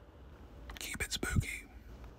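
A brief, faint whispered voice, lasting about a second in the middle of an otherwise quiet stretch.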